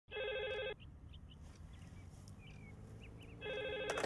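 A landline telephone's electronic ringer trilling twice, two short rings about three seconds apart.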